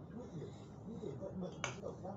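Faint speech in the background, with one sharp click about one and a half seconds in.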